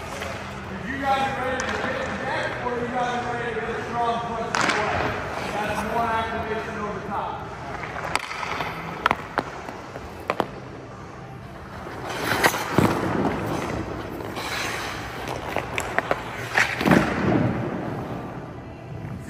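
Voices in the rink for the first several seconds, then a few sharp clacks of a hockey stick on pucks, followed by louder bursts of skate blades scraping the ice near the end.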